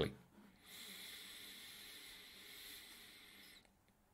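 A faint, steady breathy hiss lasting about three seconds: a person's long exhale near the microphone.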